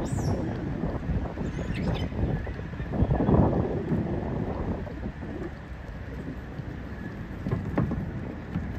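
Wind buffeting the phone's microphone in uneven gusts, a low rumbling noise that is strongest about three seconds in.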